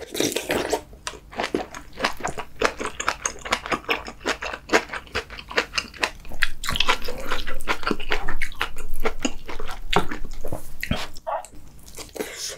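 Close-miked eating: a slurp of ramen noodles from kimchi sausage stew at the start, then continuous wet chewing with many small smacks and clicks, louder in the second half.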